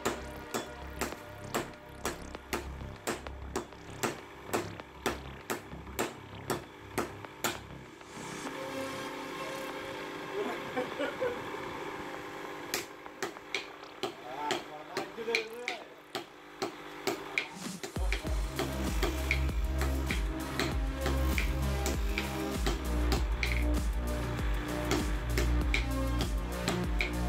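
Hammer blows on a red-hot sword blade on an anvil. First comes a fast run of sledgehammer strikes from several strikers taking turns, about two a second. Later come slower single blows from the smith's hand hammer.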